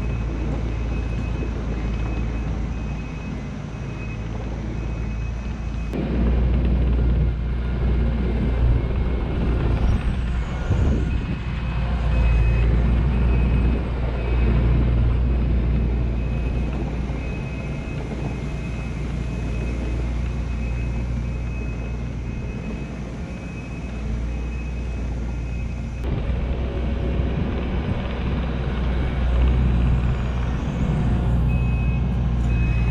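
Kubota SVL90-2 compact track loader's diesel engine working under load as it back-blades topsoil, rising and easing as the machine pushes and reverses, with its backup alarm beeping in a steady high tone for much of the time.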